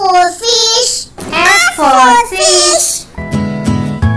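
A child's high voice calling out a sing-song alphabet phrase in two parts, then plucked acoustic guitar music comes in about three seconds in.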